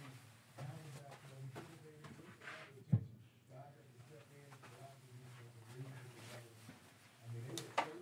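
Faint, indistinct talking with a sharp tap about three seconds in and another near the end, from trading cards and boxes being moved around on a table.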